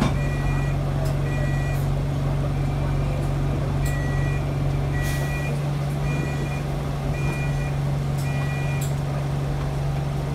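Single-deck bus idling with a steady low engine hum. Over it, short two-tone electronic warning beeps repeat about once a second and stop near the end.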